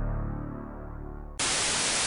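Intro music with low sustained tones fading down, then a sudden burst of television static hiss about one and a half seconds in.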